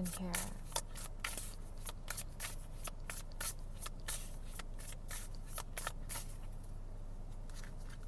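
A tarot deck being shuffled by hand: a run of quick, irregular card flicks, several a second, that thins out over the last couple of seconds, over a low steady hum.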